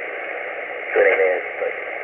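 Icom IC-703 transceiver receiving a shortwave single-sideband voice signal: a steady band of receiver hiss, with a short stretch of the distant station's voice coming through about a second in.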